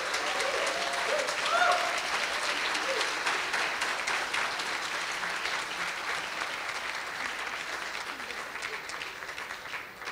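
Audience applauding, with a few voices calling out over the clapping in the first three seconds; the applause slowly dies away toward the end.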